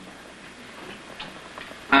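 Low room noise and recording hiss, with a faint light tick or two.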